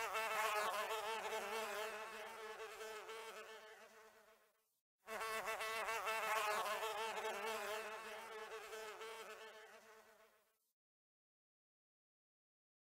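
A flying insect's wings buzzing, a wavering hum. The sound is heard twice, each time fading away over about five seconds, with a short gap about halfway through and silence near the end.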